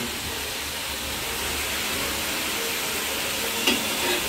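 Vegetables frying in a steel kadai over a gas flame, sizzling steadily. A light clink of the spatula against the pan comes near the end.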